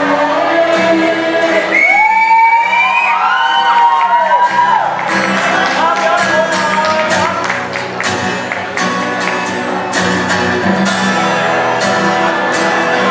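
Live acoustic music in a large hall: acoustic guitars strumming under a lead melody whose notes bend and slide through the first half. The strummed strokes grow sharper and more frequent from about halfway through.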